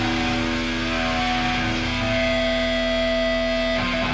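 Distorted electric guitars of a live hardcore band holding long, sustained notes over a steady drone, with no drum hits. The held notes change about one and two seconds in, and the sound shifts again near the end.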